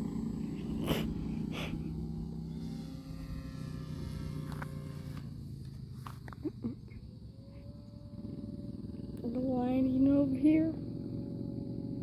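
A steady low hum runs under everything. About nine seconds in, a drawn-out, wavering voice sounds for about a second and a half.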